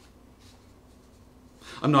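Quiet rustling of loose paper sheets being lifted and turned over on a desk, then a man's voice starts speaking near the end.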